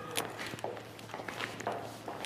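Quiet shuffling and a few light taps of sneakers on a hard floor as two people dance in place.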